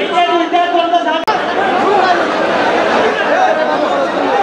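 Several people talking at once in a crowded hall, with a man's voice speaking over the chatter. There is a brief click and drop in sound just over a second in.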